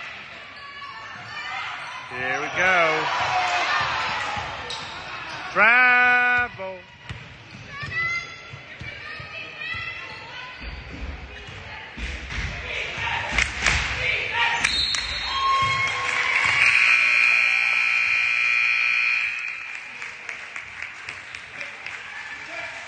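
Gym sound during a stoppage in a basketball game: voices calling out, with one loud call about six seconds in, and a basketball bounced several times on the hardwood floor in the middle. A steady held tone lasts about three seconds near the end.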